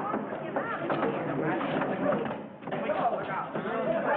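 Several voices shouting and calling over one another, with a brief lull a little past halfway.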